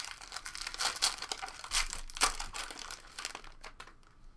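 Foil trading-card pack being torn open and crinkled by hand: a dense run of irregular crackles that thins out near the end.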